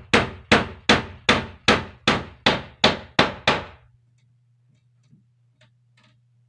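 A hand hammer striking in a steady rhythm, about ten blows at a little under three a second, nailing a new wooden wall panel in place; the blows stop a little after halfway. A low steady hum runs underneath.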